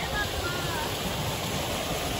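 Shallow stream water running steadily over rocks.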